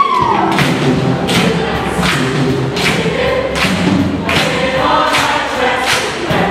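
Show choir singing with musical accompaniment, driven by a steady beat of sharp hits about three every two seconds.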